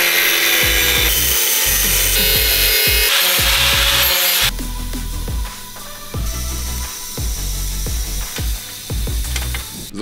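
Angle grinder cutting through metal for about four and a half seconds, then stopping. Electronic background music with a steady bass beat plays throughout, and a fainter hiss follows the cut.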